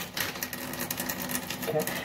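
Soap-lathered hands rubbing together, a rapid wet crackle of lather.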